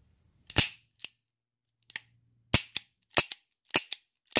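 Ruger GP100 .357 Magnum revolver dry-fired with double-action trigger pulls. About five sharp metallic clicks at uneven spacing, some followed closely by a lighter click.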